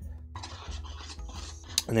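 Plastic spoon stirring and scraping thick, batter-like Herculite 2 plaster in a plastic tub, a run of short scratchy strokes. A sharp click comes near the end.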